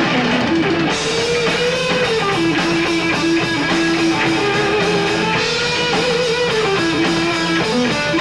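Live rock band playing: an electric guitar carries a melody with bent, sliding notes over bass and drum kit.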